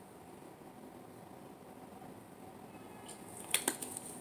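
Quiet room tone in a small room, then a few soft short clicks a little after three seconds in.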